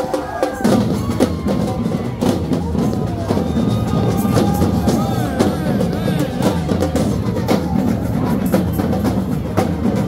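Samba drum troupe playing: many bass and snare drums beating together in a dense, unbroken rhythm.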